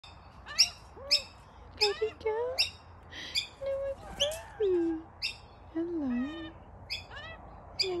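Laughing kookaburras calling: short, sharp chirping calls repeated about twice a second, with a few lower sliding notes between them.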